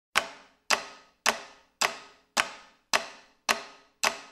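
Sharp percussive clicks struck at a steady tempo, about two a second, seven in all, each ringing out briefly: a count-in leading into the soundtrack music.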